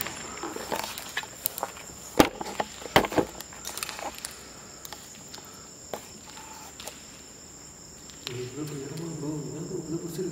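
Crickets chirping steadily, with a few sharp knocks and scuffs, the loudest about two and three seconds in, and low muffled voices near the end.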